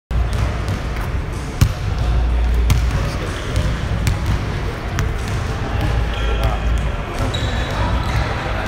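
Basketballs bouncing on a hardwood court: a few separate sharp thuds, the loudest about one and a half seconds in, over indistinct voices and a steady low hum.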